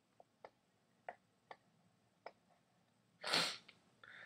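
A few faint, separate clicks while an equation is handwritten on screen with a stylus, then a short breath drawn in near the end.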